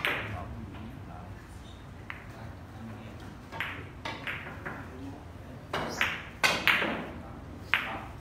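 Carom billiard balls clicking: about ten sharp ball-on-ball and cue-tip knocks, each with a short ringing tail, the loudest cluster around six to seven seconds in.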